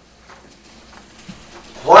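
Quiet room tone during a pause, then a man's voice starts speaking near the end.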